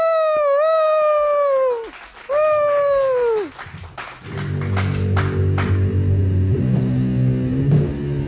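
Two long, falling 'woo' shouts into a microphone, then a rock band's electric guitars, bass and keyboard come in about four seconds in with a sustained low chord, with a few sharp clicks around it.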